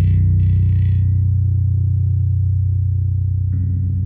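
Heavy rock music: a low, distorted electric guitar and bass chord held and slowly fading, with another low chord coming in near the end.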